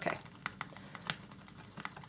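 Faint, scattered light clicks and taps of a tool against a plastic paint palette as ink and glazing liquid are stirred in one of its wells.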